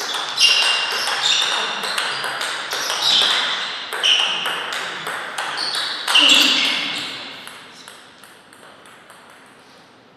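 Table tennis rally: the ball clicking back and forth off rackets and table, about two to three hits a second, each with a short ringing echo in the hall. The rally stops about six and a half seconds in, leaving a few faint ticks.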